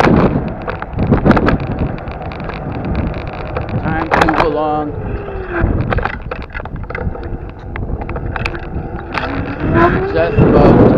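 Wind and road noise on a moving camera's microphone while riding along a street. There are a few short knocks, and a brief tone falls in pitch about four seconds in.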